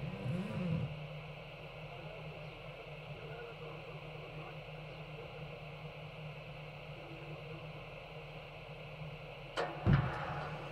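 A steady low hum in the open air, then two sharp knocks close together near the end, the starting gate of a camel race being released.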